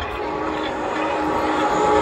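Stadium public-address system playing the opening of an intro video: a steady droning swell with several held tones that grows louder.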